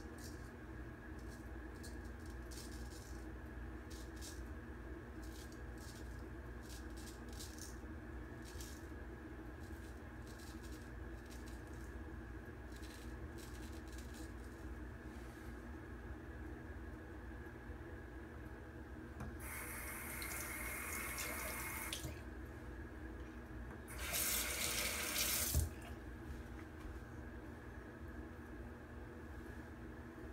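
Water tap running into a bathroom sink in two stretches, one of about two and a half seconds and a shorter one a couple of seconds later, over a steady room hum. In the first half, faint short scrapes of a straight razor drawn over lathered stubble.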